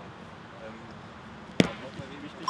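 A football being kicked: one sharp thud of a boot striking the ball about one and a half seconds in, over a faint outdoor background.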